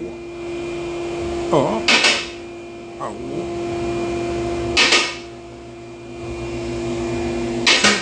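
A steady electrical hum holds one pitch and cuts off just before the end. A few short murmured vocal sounds and three brief hissing bursts, about three seconds apart, come over it.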